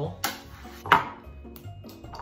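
Two clatters of a spatula and tater tots against a baking sheet and bowl as the tots are scraped into the bowl, the second, about a second in, the louder. Background music with a low steady beat runs underneath.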